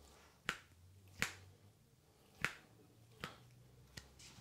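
Four sharp, short pops from a hand and wrist massage, as the client's hand is gripped and worked with both hands; the first three are loud and the last is weaker.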